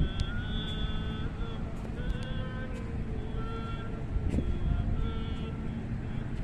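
Wind on the microphone gives a steady low rumble over an open tidal flat. Faint high-pitched tones come and go several times over it.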